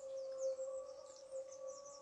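Faint bird chirping, short quick notes that rise and fall, over a steady faint tone.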